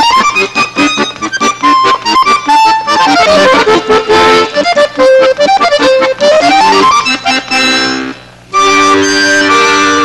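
Two accordions playing a duet: quick runs of notes sweeping up and down, then, from about seven seconds in, long held chords with a short break before the last one.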